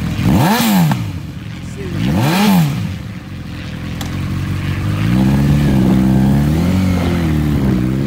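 A 2011 Honda CB1000R's inline-four engine, through a Yoshimura aftermarket exhaust, revved twice at a standstill, each a quick rise and fall in pitch. About five seconds in, the bike pulls away, its engine note rising, dipping briefly and rising again.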